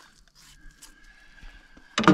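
Quiet filleting: a knife cutting a carp fillet free along the rib bones, heard as a few faint, soft ticks.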